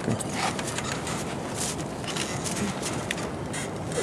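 Rustling with scattered small clicks: handling noise from a handheld camera pressed against a skydiver's harness and gear.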